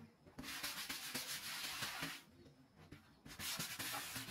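Sheet of sandpaper rubbed by hand over a curved plywood surface: a long stretch of sanding strokes starting about half a second in, a pause of about a second, then sanding again near the end.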